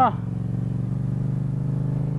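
Motorcycle engine running at steady, even revs while cruising slowly.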